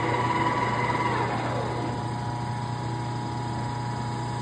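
Bulgarian engine lathe running with a steady whine; about a second in the spindle is declutched and the whine falls in pitch as the chuck coasts to a stop, while the motor keeps running with a steady hum.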